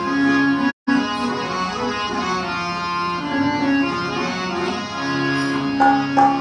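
Harmonium playing a melodic lead-in to mantra singing: held reed notes and chords that shift every second or so. The sound cuts out completely for a moment just under a second in.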